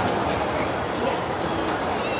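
Steady rumbling ambience of an indoor ice rink in a large hall, with faint distant voices.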